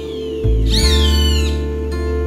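Gentle music of held low tones, over which a roadside hawk gives one loud, high, drawn-out call that falls steadily in pitch, starting a little after half a second in and lasting under a second.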